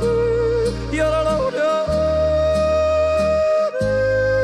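A man yodeling in quick leaps between low and high voice, then holding one long high note from about two seconds in. Behind him is an Alpine folk-music backing with a bass line played in separate held notes.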